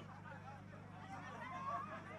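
Faint voices of people talking in the background over a steady low hum, with no main speaker on the microphone.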